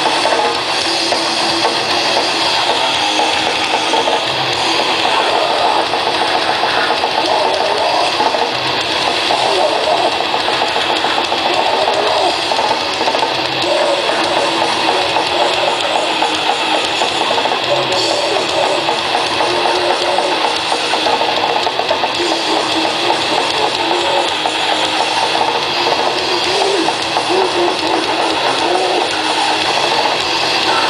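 Grindcore band playing live: heavily distorted electric guitars and drums, with harsh shouted vocals, loud and continuous.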